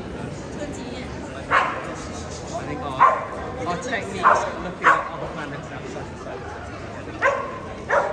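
A dog barking: several short, sharp barks at uneven intervals over the steady chatter of a crowd.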